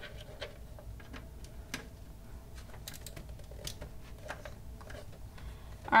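Scattered small plastic clicks and cable rustling as front-panel header connectors are handled and pushed onto a motherboard's pin headers, with one sharper click right at the start.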